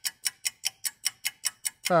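Cartoon clock ticking sound effect: fast, even ticks at about six a second, marking time dragging while waiting.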